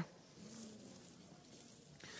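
Near silence: faint, even background hiss between spoken lines.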